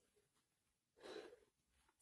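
Near silence, with one faint, short breath about a second in.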